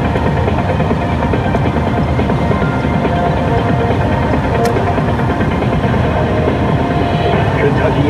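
Steady road and tyre noise inside a moving car at highway speed, with AM news-radio audio from the car radio mixed in.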